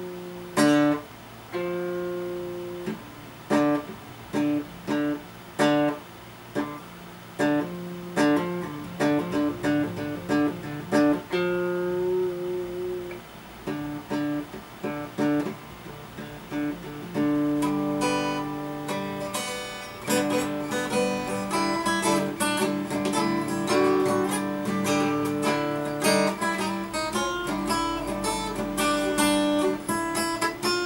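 Acoustic guitar played in practice by a self-taught learner: picked notes and chords with short pauses between phrases, turning about halfway through into a denser, steadier run of picked notes.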